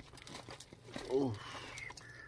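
Faint clicks and soft scraping as cooked chicken pieces slide off a plate into a saucepan of cream sauce, with one short voiced sound from the cook about a second in.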